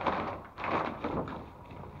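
Rustling and handling noise of a large plastic-foil dog food bag being lifted out of a cardboard box, loudest in the first second and fading after.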